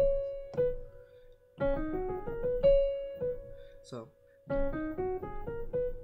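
Piano playing a short F-sharp pentatonic intro figure: quick rising runs of notes, twice, each settling on a held high note.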